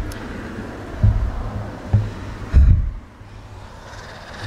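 A car driving past on the street, its road noise fading about three seconds in, with four short low thumps on the microphone, the last one the loudest.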